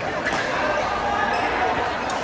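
Badminton rally: a sharp racket strike on the shuttlecock about a third of a second in, over steady chatter and play from other courts in a busy hall.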